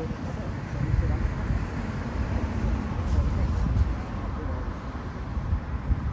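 Outdoor rumble of road traffic passing on a street, mixed with wind buffeting the microphone, with faint voices.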